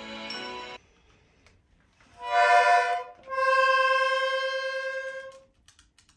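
Small toy accordion being squeezed: a short chord that cuts off, then after a pause a loud chord and one long held reed note that fades out as the bellows run out.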